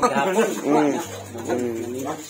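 Men talking in conversation; the recogniser wrote no words here.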